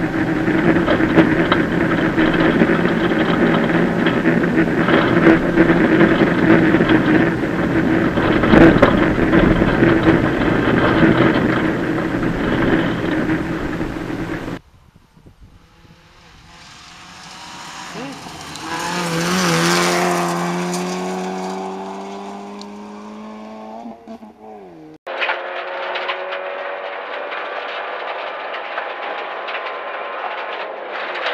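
Citroën C2 VTS rally car's 1.6-litre four-cylinder engine running hard at steady revs, heard from inside the cabin over road noise from the gravel. About halfway through it is heard from the roadside instead: the car approaches, its engine getting louder and rising in pitch, then drops in pitch as it passes before the sound cuts off suddenly. After that, the in-car engine and road noise return.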